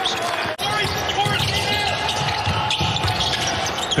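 Basketball game sound in a gym: a ball dribbling on the hardwood floor, with players' voices. The sound breaks briefly about half a second in.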